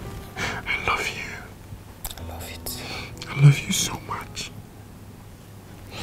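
Close, breathy whispering and soft murmurs between a man and a woman face to face, in short irregular bursts, with one brief low voiced murmur partway through.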